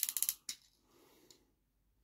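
Plastic joints of a toy pterosaur clicking as its neck is moved: a quick run of clicks in the first half-second, then faint handling of plastic.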